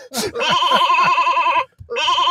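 A bleating cry with a fast wavering pitch, repeated in identical spells about a second long: one starts about half a second in, after a short burst, and another begins right at the end.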